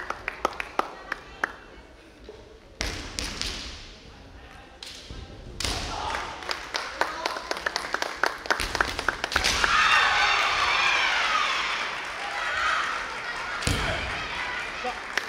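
Kendo bout: repeated sharp clacks of bamboo shinai striking and knocking together. The fencers give long drawn-out kiai shouts from about nine and a half to twelve and a half seconds in.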